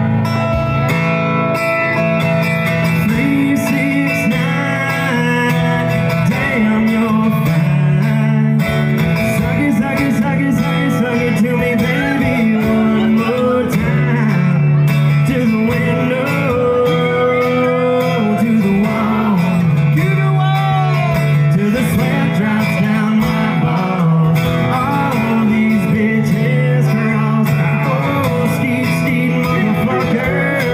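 Two acoustic guitars playing a love song live, with a man singing along at the microphone, heard through a phone livestream's audio.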